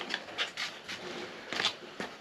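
Cardboard strips and tape being handled and pressed against a wall panel: a few soft rustles and light taps.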